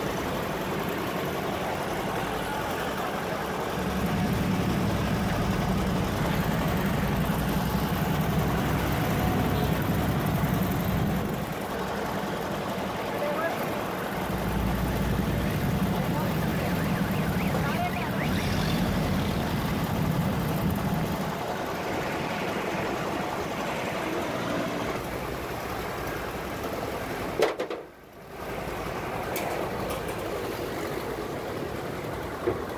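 Busy street traffic and engine noise. A low, steady engine drone swells for several seconds at a time, then fades. Near the end comes a single sharp click, and the sound briefly drops out.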